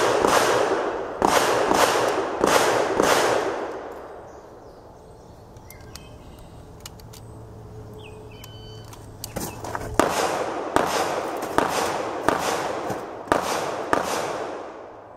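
Pistol firing 124-grain rounds, each shot a sharp report that rings on briefly. There are about five shots roughly two-thirds of a second apart, a pause of about six seconds, then about five more at the same pace.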